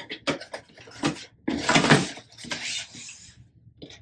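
Cardboard product box being handled and set aside on a tabletop: several light clicks and knocks, then a longer scraping rustle of the box moving across the table in the middle.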